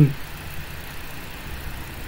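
Steady low background hum and noise with no distinct events.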